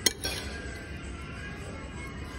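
Metal spoon striking a ceramic plate while scooping food: one sharp clink right at the start, then a softer scrape of the spoon across the plate a moment later.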